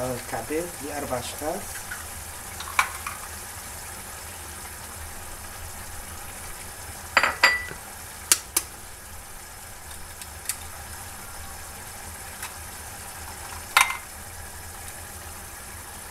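Tomato and pepper sauce simmering in a frying pan with a steady sizzle, broken by sharp clicks and clinks as eggs are cracked against a small ceramic dish: a cluster about seven to eight seconds in and a single sharp one near the end.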